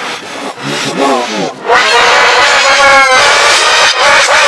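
A boy's screaming voice played backwards and distorted by a pitch-shifting 'G-Major' edit effect. It gives short warbling cries at first, then from about halfway a loud, sustained, harsh scream whose pitch rises near the end.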